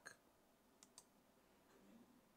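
Near silence: room tone with two faint clicks close together, about a second in.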